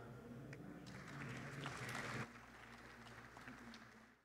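Faint, brief audience applause that stops a little after two seconds in, over a low steady hum.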